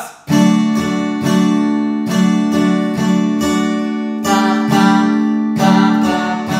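Acoustic guitar with a capo strumming a G major chord in a steady down-up pattern, about two strums a second.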